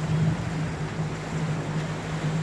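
Outboard motor of a small aluminium boat running steadily under way, a constant low hum over the rush of water and wind.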